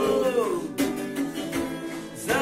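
Acoustic guitar strummed in chords, with a sung phrase from several voices falling in pitch and trailing off in the first half second.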